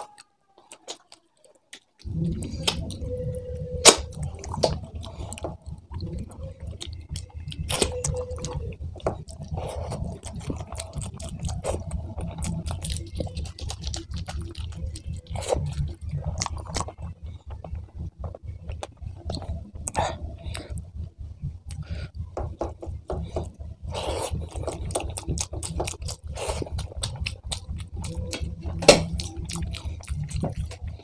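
Close-miked wet chewing and lip-smacking as mouthfuls of rice and curry are eaten by hand, with many short clicks and smacks. It starts about two seconds in, after a moment of near silence.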